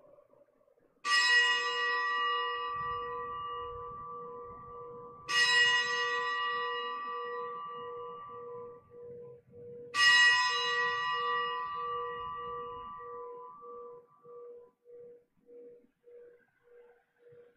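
A consecration bell struck three times, about four to five seconds apart, each stroke ringing and fading slowly with a wavering low tone: the signal for the elevation of the consecrated host at Mass.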